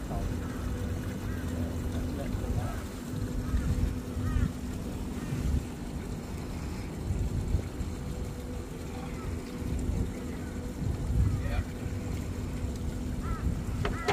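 Wind buffeting the microphone in uneven gusts over a steady low hum.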